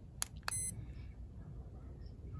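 Two clicks from the button of a handheld UV index meter, the second followed at once by a short, high electronic beep.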